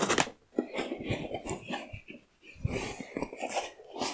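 Cardboard box being opened: scissors slicing the packing tape, then the cardboard flaps scraping and crackling as they are pulled open, a string of irregular crackles and scrapes with a short pause about halfway.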